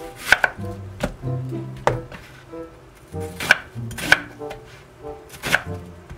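Chef's knife cutting an onion on a wooden cutting board: several sharp knocks of the blade meeting the board, irregularly spaced, some in quick pairs.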